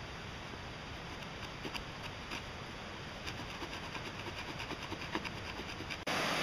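Quiet rasping of the small saw teeth on the spine of a Mini Tom Brown Tracker knife cutting a notch into a branch, with a few faint clicks.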